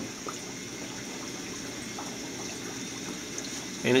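Steady hiss of the idling semiconductor wet bench, with water running in its process tanks.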